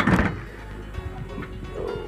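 One sharp clunk right at the start from the bus's rear engine hatch being worked by its handle, followed by background music.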